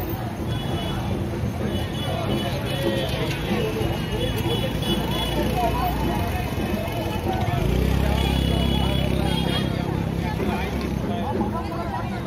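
Crowd chatter, many voices at once, with motorcycles riding past through the crowd. A steadier low engine rumble grows louder for a few seconds in the second half, as a motorcycle comes close.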